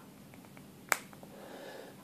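Rapala Titanium Spring Bobber's clamp snapping one more notch tighter onto a fishing rod tip as it is squeezed by hand: one sharp click about a second in, with a few faint ticks around it. The snap is the sign of its teeth closing down so it sits snug on the rod.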